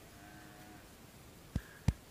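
Two sharp clicks about a third of a second apart near the end, the second louder, after a faint thin tone in the first moment of a quiet pause.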